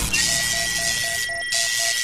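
Electronic intro sound design: a steady high tone and a low tone pulsing about four times a second, over a hiss.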